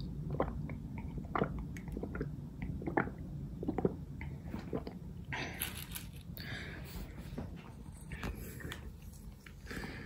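A person drinking water from a large mug, gulping and swallowing repeatedly, a short wet click every half second or so for about five seconds.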